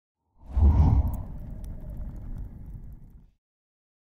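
Intro sound effect: a whoosh with a deep boom that hits about half a second in, then a rumble that fades and cuts off after about three seconds.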